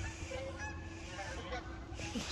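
Geese honking: a few faint, scattered short honks over a low wind rumble on the microphone.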